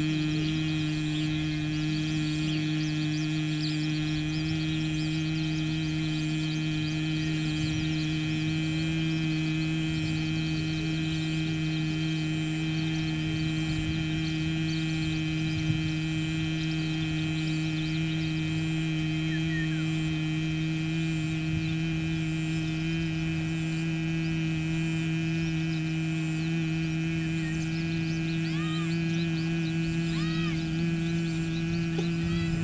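Steady, unbroken low hum of Bhramari pranayama, the bee-like sound made in the throat with the ears blocked and the nostrils partly closed, held at one pitch.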